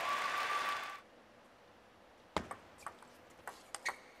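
Table tennis ball being struck by paddles and bouncing on the table: a quick run of sharp clicks starting a little past two seconds in, the opening shots of a rally.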